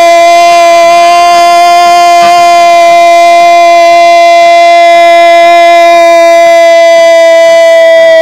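A radio football commentator's long goal cry: one unbroken, very loud "gooool" held on a single steady pitch for about ten seconds.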